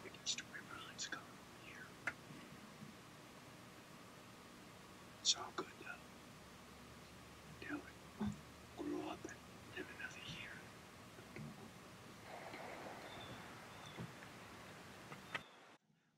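A man whispering in short, quiet phrases over a faint steady hiss.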